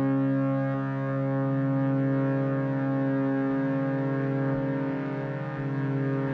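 Sustained electronic drone: a low, steady tone with many overtones held throughout, its lowest part taking on a slight wavering about three and a half seconds in.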